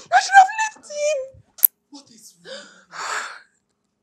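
A woman crying: a wavering wail for about the first second and a half, a single sharp click, then gasping, sobbing breaths.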